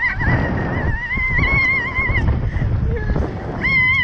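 A slingshot-ride rider screaming: a long, high, wavering scream held for about two seconds, then another starting near the end, over wind rumbling on the ride-mounted microphone.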